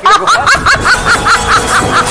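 Hearty laughter: a quick, even run of 'ha-ha-ha' pulses, about five a second.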